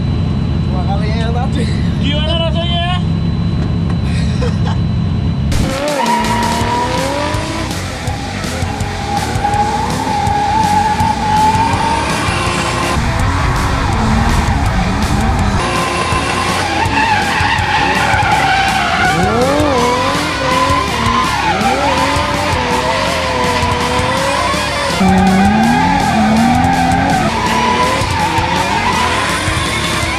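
BMW E46 drift car: at first its engine running, heard from inside the cabin, then after a sudden cut its rear tyres squealing in long wavering screeches as it drifts and smokes.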